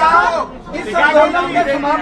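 Speech only: a man talking into a microphone, with other voices chattering alongside.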